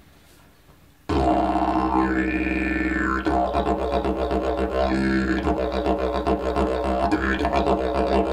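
Eucalyptus didgeridoo with a beeswax mouthpiece starting about a second in and played as a steady low drone, the demonstration of its basic tone. The tone brightens and dulls every couple of seconds as the player reshapes his mouth.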